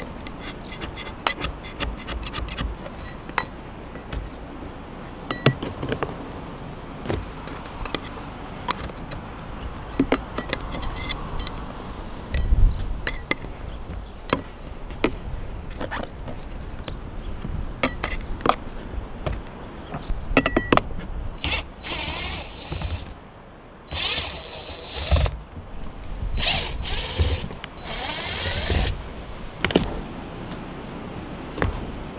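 Metal putty knife scraping and prying at old roof sealant around an RV roof vent's metal flange: a long run of small scrapes and sharp clicks. In the last third come several louder, rougher bursts lasting a second or more each.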